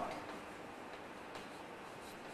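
Chalk writing on a blackboard: faint taps and scratches of the strokes over a steady room hiss, with one sharper tap about a second and a half in.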